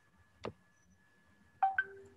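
A single sharp click about half a second in, then two brief electronic-sounding tone blips near the end, over a faint steady high tone.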